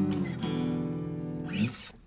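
Acoustic guitar opening a song: a chord struck at the start rings out for about a second and a half, with a brief accent near the end before it dies away.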